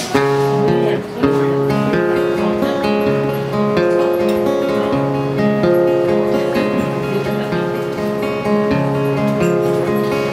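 Solo steel-string acoustic guitar playing a repeating strummed chord pattern, the instrumental intro of a folk song, before the voice comes in.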